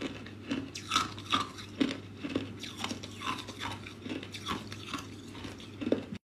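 Clear ice cubes being chewed and crunched between the teeth: a steady run of short, crisp crunches, about two or three a second.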